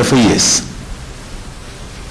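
A man's voice for about half a second, then a pause filled only by a steady hiss.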